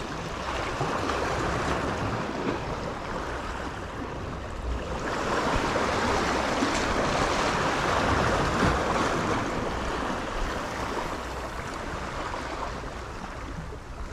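Sea waves washing against a jetty: a steady rushing that swells for several seconds in the middle and then eases off.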